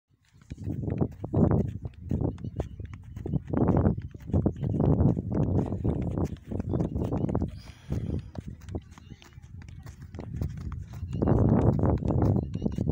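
Indistinct voices of people talking on and off, in short irregular bursts.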